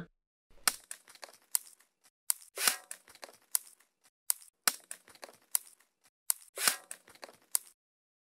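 Looped foley percussion made of sharp clicks from snapped wooden sticks and a short scrape of metal sliding. The pattern begins about half a second in and repeats about every two seconds.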